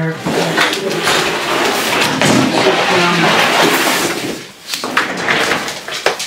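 A heavy homemade wooden desk scraping across a wooden floor as it is pushed, for about four seconds. This is followed by knocks and rattles as an office chair is pulled in and sat on.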